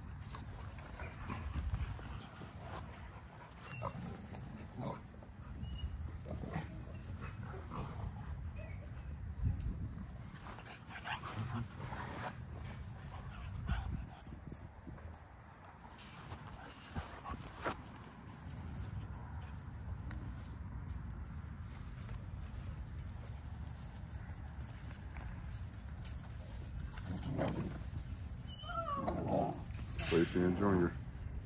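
XL American Bully dogs and puppies play-wrestling, with scattered short scuffling sounds and a brief pitched dog sound near the end.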